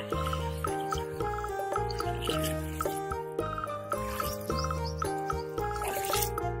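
Background music with a repeating melody and a steady beat.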